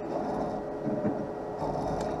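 Optical lens edger running steadily with a faint even hum while its two styluses trace the shape of the clamped lens before cutting.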